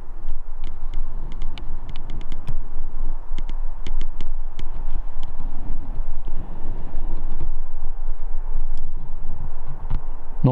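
Steady low rumble of outdoor wind on a handheld camera microphone, with scattered light crackles and clicks, thickest in the first half.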